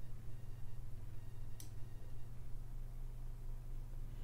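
Steady low hum of room tone, with a single short mouse click about one and a half seconds in.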